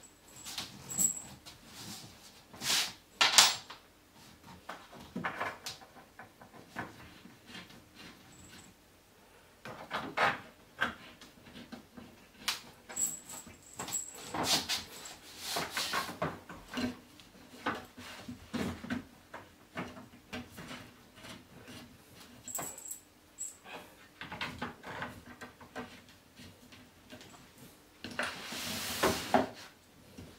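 Scattered knocks and clicks of flat-pack furniture panels and fittings being handled and fitted together by hand, the loudest knocks a few seconds in, with a second or so of continuous rustling noise near the end.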